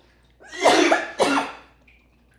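A woman coughing twice in quick succession, hard, from a piece of steak caught in her throat.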